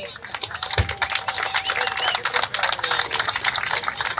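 Crowd applauding, many hands clapping in a dense patter, with voices in the background. A low thump about a second in.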